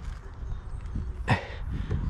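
Wind rumbling on the microphone, with a brief swish about a second and a quarter in as a microfiber towel is wiped across the car's paint.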